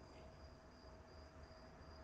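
Near silence in a pause between speech, with a faint high-pitched chirp that pulses a few times a second over a low hum.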